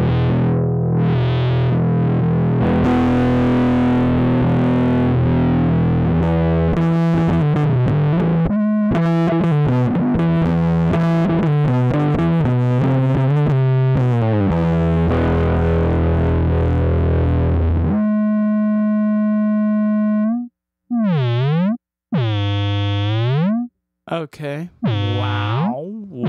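Heritage H-150 electric guitar played through heavy distortion from Reaktor Blocks' Driver module: chords and picked notes for about eighteen seconds, then one held note. Near the end the held tone swoops down and back up in pitch several times.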